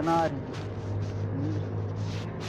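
A motor vehicle's engine running nearby, a steady low hum under a man's speech at the start.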